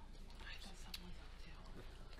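Quiet meeting-room tone: a steady low electrical hum, with faint murmured voices and a few small ticks and rustles.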